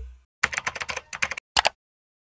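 Computer keyboard typing sound effect: a quick run of about ten keystrokes, then a short pause and a final quick double click.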